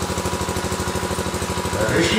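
A steady, rapid, even mechanical pulsing like a small engine running, with a faint steady tone above it.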